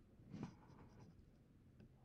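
Near silence with faint handling of a caliper being opened: a soft scrape about half a second in, then a light click near the end.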